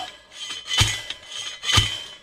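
Hand post driver slamming down on a steel fence post: two metallic clangs about a second apart, each with a brief ringing tail. The post is going in hard, against what the driver thinks is a rock.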